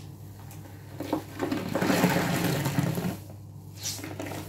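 Soapy sponge squeezed out over a sink of sudsy water: a few wet squelches, then water and suds streaming and splashing back into the basin for over a second, loudest about two seconds in.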